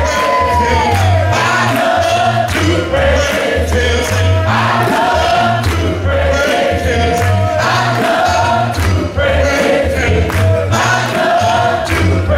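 Live gospel song: a man singing lead with a choir over a band with a steady beat.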